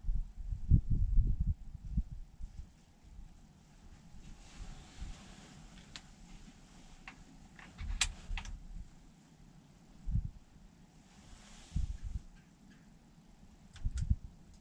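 Handling and movement noise of a hunter in a wooden box blind: low thumps and bumps, loudest in the first two seconds, a few sharp clicks between about six and eight seconds, soft rustles, and more low knocks near the end.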